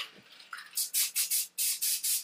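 A Krylon aerosol spray can of satin hunter green paint hissing in several short bursts, starting about three-quarters of a second in, as a light coat is sprayed through camo netting.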